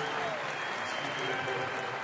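Arena crowd applauding and cheering, a steady wash of clapping and voices, for a completed overhead log lift.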